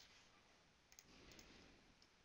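Faint computer mouse clicks: one at the start, then two quick pairs about a second in, over near-silent room hiss.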